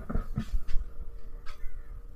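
Male Eclectus parrot making a few short, separate calls while perched on a hand.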